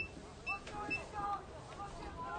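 Faint voices of players and people along the sideline of a football field, with a click and a few very short high-pitched beeps in the first second.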